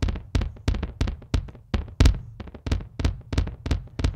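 A single electronic kick drum from the DM1 drum machine at 90 BPM, run through Tap Delay's multi-tap tape-style echo with its tempo synced to the beat. It plays as a quick run of repeating thumps, about four a second, some louder than others as the echoes fall between the beats.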